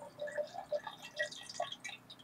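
Thin stream of liquid trickling into a glass beaker of solution, making small irregular splashing plinks.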